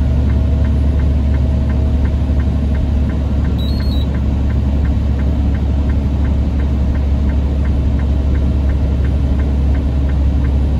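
Semi truck's engine and road noise heard inside the cab while driving on a snowy road: a steady low drone. A light, regular ticking comes about three times a second, and a brief high beep sounds about four seconds in.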